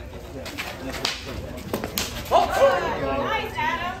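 A few sharp clacks of fighting sticks striking in a short-stick sparring exchange, followed by a raised voice calling out for the last second and a half.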